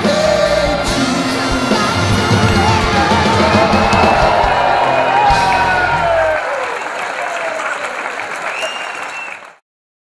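Live pop music from a band with a horn section and several singers. The drums and bass stop about six seconds in, the voices ring on and fade out shortly before the end.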